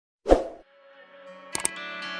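A single sharp pop sound effect, then music fading in quietly, with two quick clicks near the end.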